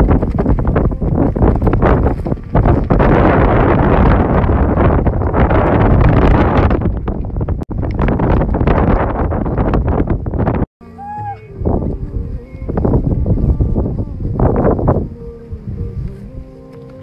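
Strong wind buffeting the microphone, loud and gusty for about ten seconds, then a sudden cut to quieter gusts with faint music underneath.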